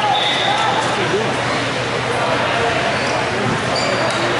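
Indoor futsal play in a gym: the ball being kicked and bouncing on the hardwood floor and sneakers squeaking, under indistinct voices of players and spectators echoing in the hall.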